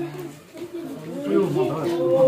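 A man's voice talking, low and unhurried; no other sound stands out.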